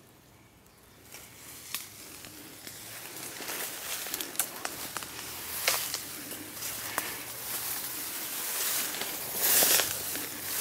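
Footsteps pushing through tall grass and brush: grass swishing and twigs crackling close to the microphone. It starts faint about a second in, grows louder, and is loudest in a burst of swishing near the end.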